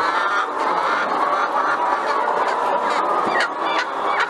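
A large flock of caged laying hens calling together in a steady, dense din, with a few louder, higher calls near the end.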